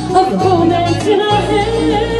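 A woman sings into a handheld microphone over a karaoke backing track with a pulsing bass, holding long notes that bend and waver in pitch.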